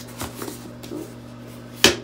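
A foldable foam infant bath tub being folded by hand: soft handling rustles, then one sharp snap near the end as its magnetic sides click together into a seat.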